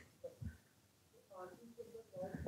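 Faint, off-microphone speech from a person in the room, in short pieces with near silence between them.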